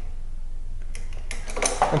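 Vice grips clinking against the threaded spring-adjuster nut of a power chair's coil-over shock as the nut is cranked down to tighten the suspension: a few light, sharp metal clicks about a second in.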